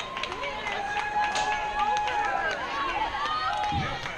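Softball players and spectators shouting and calling out over one another, with a long drawn-out call near the start.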